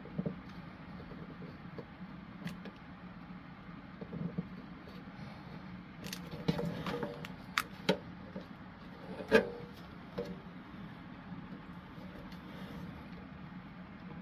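Small printed card pieces handled and pressed together by hand: scattered light taps and clicks, clustered a little past halfway, with the sharpest click about nine seconds in, over a steady low background hum.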